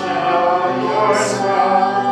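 A choir singing, holding long notes, with a sung 's' sound about a second in.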